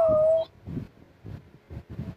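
A single short animal-like call, held for about half a second and falling slightly in pitch, then faint soft taps about twice a second.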